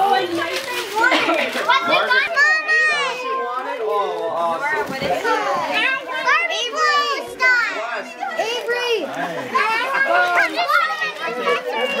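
Several children talking and exclaiming over one another in high voices, with a high rising-and-falling squeal about three seconds in.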